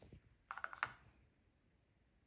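Light clicks and taps from handling a paintbrush and painting things on a tabletop: a soft knock at the start, then a quick run of about five small clicks about half a second in, the last one the loudest.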